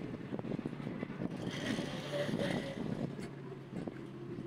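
An orange kitten crunching and chewing dry kibble from a plastic tray, a dense run of small crackles close to the microphone that thins out near the end. Background street noise swells in the middle.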